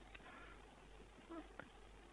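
Near silence: room tone, with a faint brief sound about one and a half seconds in.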